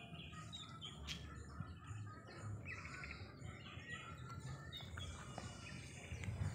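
Faint bird calls in the background: short chirps, with a quick trill near the middle.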